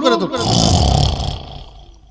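A man's chanted voice ends at the very start. It is followed by a loud rush of breath, about a second long, blown into a close microphone with a low rumble of mic buffeting, which then fades away.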